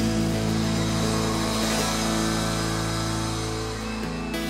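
Live band music: a full chord held steady, easing slightly in loudness near the end.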